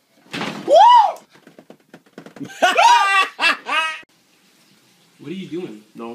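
A person screams in fright: one loud, high cry that rises and falls about half a second in, then a second run of high shrieks about two and a half seconds in. Lower-pitched talking starts near the end.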